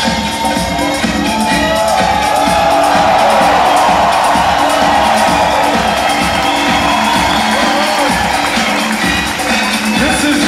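Music for a breakdance battle playing loud over a large crowd cheering and whooping. The cheering swells a few seconds in.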